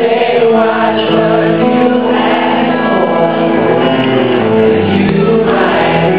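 Live soul music: a woman singing sustained, bending vocal lines over electric guitar and band, with other voices joining in, recorded from the audience on a camera microphone with a dull, muffled top end.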